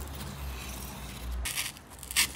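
Low handling rumble, then, about one and a half seconds in, a short scraping rasp as a craft knife blade cuts into cardboard.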